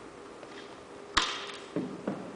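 Flexible frame poles of a portable pop-up banner display being set up on a hard floor: one sharp snap with a short ringing tail about a second in, then two softer knocks near the end.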